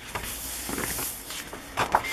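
Sheets of a thick 12x12 patterned paper pad rustling and sliding as pages are turned, with a couple of soft brushes of paper.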